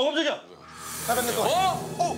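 A voice calling "eh?" twice in an exaggerated rising-then-falling pitch, once at the start and again about a second and a half in. Between the calls a hiss swells up from about half a second in and stays under the second call.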